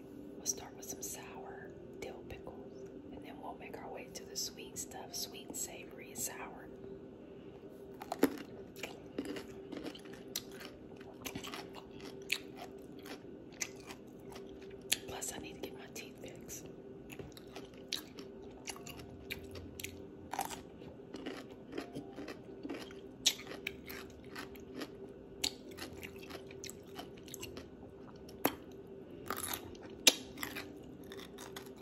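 Close-miked bites and crunchy chewing of whole baby dill pickles, with sharp crunches scattered throughout and wet mouth sounds between them, over a steady low hum.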